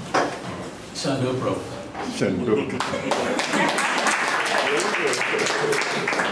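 Several people talking at once, their voices overlapping into indistinct chatter that thickens in the second half, with a few sharp knocks early on.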